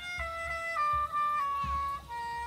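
Music: a single reed wind instrument playing a slow melody of held notes that steps down in pitch, with a falling slide near the end.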